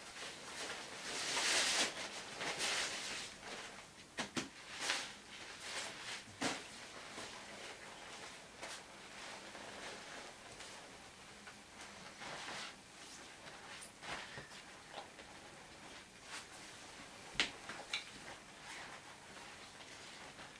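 Rustling and crinkling as a folded vinyl inflatable pony is pulled from a cloth drawstring bag and unfolded, with a few sharp knocks and clicks, the loudest near the end.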